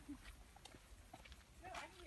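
Near silence, with faint voices of people walking ahead, a little louder near the end, and faint footfalls on a dirt path.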